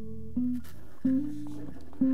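D'Angelico EX-SS hollow-body fretless bass played on its neck (rhythm) pickup: a few sustained notes, the one about a second in sliding up in pitch and back down, the smooth glide of a fretless neck.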